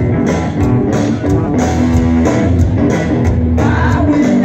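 Live blues-rock band playing instrumentally: electric guitars ring out over drums and bass with a steady beat.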